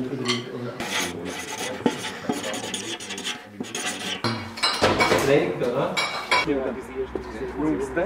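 Dishes and cutlery clinking and clattering in irregular knocks, with indistinct voices chattering underneath.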